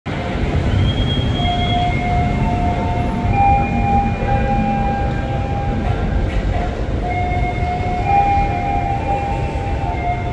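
KRL commuter electric train approaching a station platform: a steady low rumble with several high, steady tones that come and go at different pitches, each held for a second or more.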